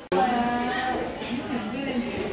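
A person's voice drawn out in one long held sound for most of a second, followed by more wavering vocal sounds.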